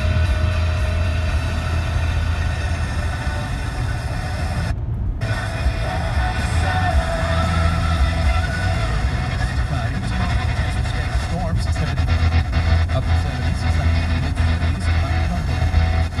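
Car radio stepping through FM stations: music and talk from the speakers, with the radio audio cutting out briefly about five seconds in as the tuner changes frequency. A steady low car hum runs underneath.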